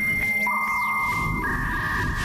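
Electronic music or sound effects made of held synthesized tones. A high steady tone is joined about half a second in by a lower, buzzier one, and the high tone shifts to a different pitch near the end.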